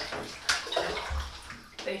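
A person shifting their body in an empty bathtub: a sharp knock about half a second in, then rustling and a low thud against the tub.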